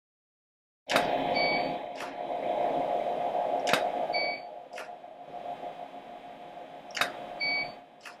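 After dead silence, a steady hum starts suddenly about a second in. Over it come five sharp clicks at uneven intervals and three short high electronic beeps about three seconds apart.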